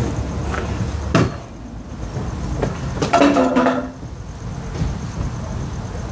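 Handling noise: a single sharp clack about a second in, then a short voice-like hum a couple of seconds later.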